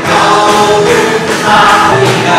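A congregation singing a worship song together with a live band: many voices at once over guitars and drums.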